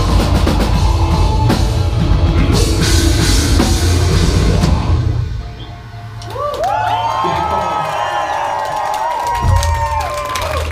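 Heavy metal band playing live: drum kit and distorted electric guitars at full volume. About five seconds in the band drops out, and held electric guitar notes ring on, sliding and bending in pitch.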